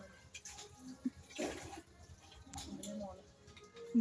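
Soft, indistinct speech, with a short hiss about one and a half seconds in.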